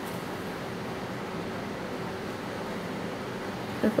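Steady background hum and hiss of a room, with no distinct sound standing out.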